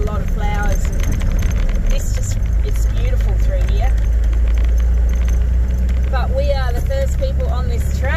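Four-wheel drive driving along a dirt track: a steady, loud low rumble of engine and tyres.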